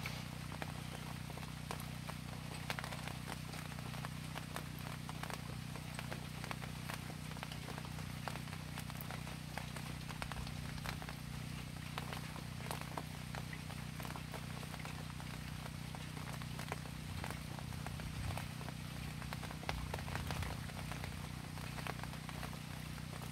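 Light rain and dripping water outdoors: scattered drops ticking irregularly, over a steady low hum.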